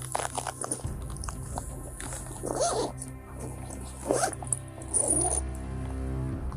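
A dog barks three times, about two and a half, four and five seconds in, over steady background music and the rustle of things being handled.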